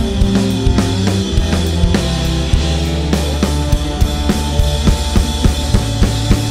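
Rock band playing an instrumental passage with the drum kit to the fore: fast, busy snare and bass drum hits over a held bass line.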